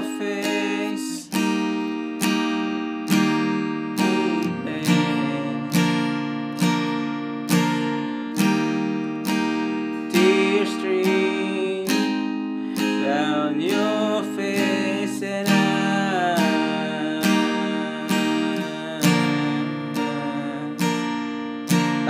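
Acoustic guitar with a capo, strummed in steady single down strums about once a second, four to each chord through a C–F–C–G bridge progression, with a voice singing the melody over it at times.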